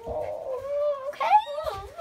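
Small puppy whining in a long, high, wavering note, with a short rising cry about a second in: a nervous, shaking puppy.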